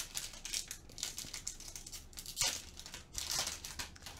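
Foil wrapper of a Panini Donruss Optic football card pack being twisted and torn open by hand, crinkling and tearing in irregular bursts.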